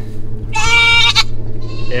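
A young buck goat bleats once, a single loud call of under a second, starting about half a second in. He is mouthy, calling from his kennel.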